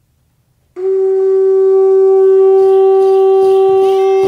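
Near silence, then under a second in a wind instrument sounds one long, steady note, loud and reedy-rich, with faint further music joining about halfway through.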